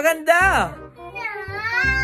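A young girl crying: a short wavering wail at the start, then a longer drawn-out wail that rises and falls from past the middle.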